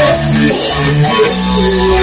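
Rock band playing live in a rehearsal room: electric guitar over a drum kit, held chords with a change of notes about a second in.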